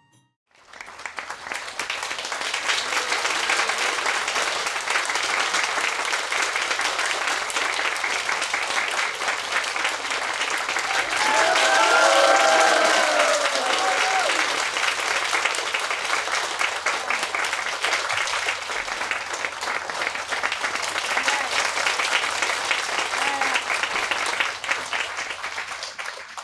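An audience clapping steadily, with a few voices calling out over the applause about halfway through, when it is loudest.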